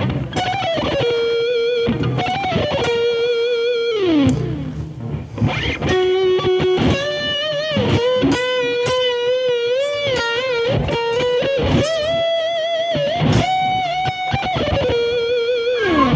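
Distorted seven-string Ibanez electric guitar playing a slow lead melody: sustained notes with string bends and wide vibrato, and a long slide down about four seconds in.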